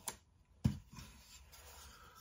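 A thin wooden board being picked up and handled: a light click, then a sharper knock about two-thirds of a second in, followed by faint scraping and rustling.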